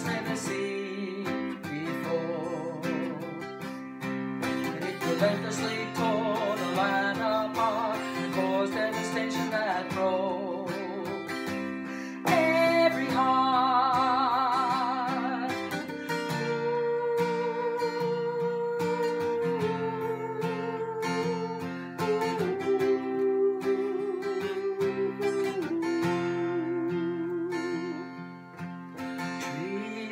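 A woman singing a country ballad in long, wavering held notes over a strummed steel-string acoustic guitar. The song gets louder about twelve seconds in.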